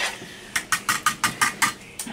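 Wire whisk beating eggs, oil and milk in a plastic mixing bowl. Quick, even strokes click against the bowl, about seven a second, for about a second, starting about half a second in.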